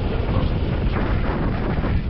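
Wind rushing over the microphone of a camera on a paraglider in flight: a steady low rushing noise.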